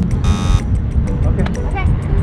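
A short electronic buzzer sound effect of the 'wrong answer' kind, marking a false alarm. It lasts about a third of a second near the start, over a steady low rumble of wind on the microphone.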